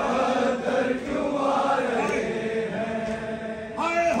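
Many men's voices chanting a Shia mourning lament (noha) together in a drawn-out melody, with a louder voice joining in near the end.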